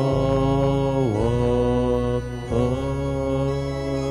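Church organ holding sustained chords under sung liturgical chant, the harmony moving to new chords about a second in and again about two and a half seconds in.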